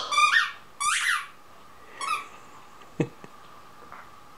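Kong Air Kong Squeaker tennis ball squeaking as a small dog bites down on it: three squeaks in the first two and a half seconds, the first two loud and drawn out, the third shorter.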